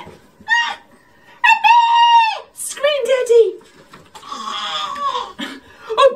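A woman's voice making long, drawn-out wailing cries with short breathy sounds between them: mock crying, acted for a storybook reading.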